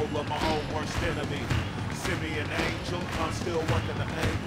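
Hip-hop track playing: a steady beat of about two drum hits a second with a voice over it.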